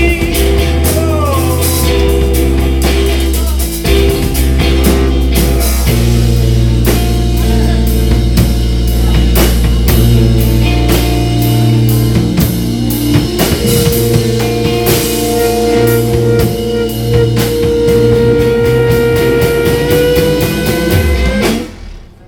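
Live rock band playing an instrumental outro: electric guitar over two drum kits played together, with long held notes in the last few seconds. The music stops abruptly on the final beat just before the end.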